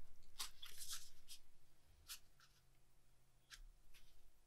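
Faint crackling and creasing of a cardboard toilet paper tube's cut tabs as fingers bend them outward, a few short scattered crackles, most of them in the first second and a half.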